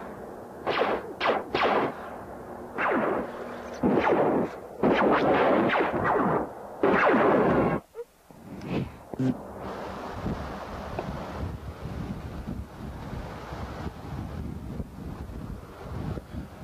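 Laser-gun firing effects for a homemade prop ray gun: a rapid series of loud, sharp shots over the first eight seconds. These cut off suddenly, leaving a steady hiss of wind and distant highway traffic.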